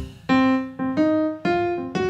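A jazz tune in a swung shuffle feel: a keyboard plays a melody with a new note every quarter to half second, and a drum kit plays along.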